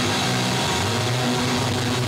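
Punk rock band playing live, with loud distorted electric guitar over bass and drums.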